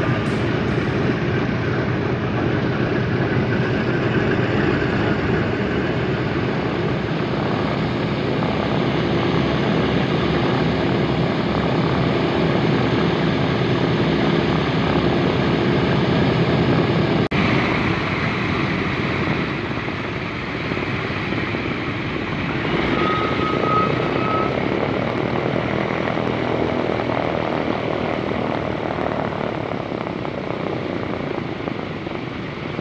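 The four Wright R-1820 Cyclone radial engines of a B-17G Flying Fortress run steadily as the bomber taxis. The sound breaks off sharply about 17 seconds in, is a little quieter for a few seconds, then swells again as the plane comes head-on toward the listener.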